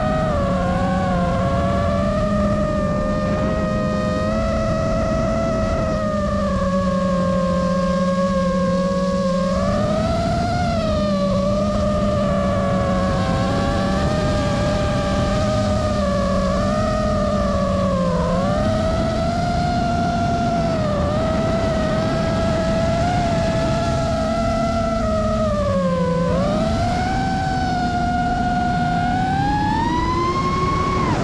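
FPV quadcopter's brushless motors and propellers whining, the pitch sliding up and down with the throttle. There are dips about two-thirds of the way through, and a sharp rise at the end as it speeds up.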